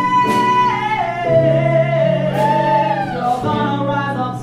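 Live jazz performance: a woman's voice holds a long high note that slides down about a second in, then carries on the melody in a rising-and-falling phrase over keyboard accompaniment.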